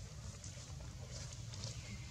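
Faint outdoor background: a steady low rumble with a few soft, short clicks partway through.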